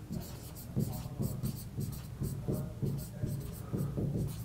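Chalk writing on a blackboard: a quick run of short scratching strokes and light taps as a word is written out.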